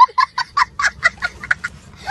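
A small child laughing hard in rapid, short, high-pitched bursts, about five or six a second, with a cackling sound.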